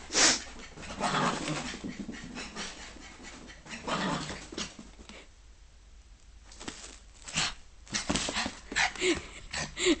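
A dog panting close to the microphone in short noisy bursts, with a quieter pause about halfway through.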